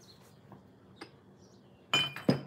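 A couple of faint taps, then a sharp clink with a brief high ring near the end as dishware is set down against a hard surface.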